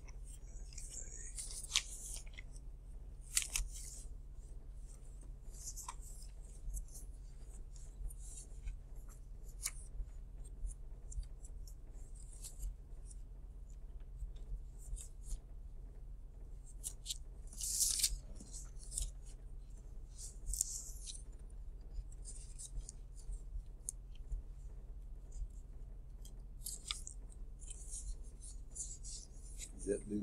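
Sheets of paper being handled and shuffled, in short scattered rustles with a few small ticks, loudest around a quarter of the way in and just past halfway. A steady low electrical hum runs underneath.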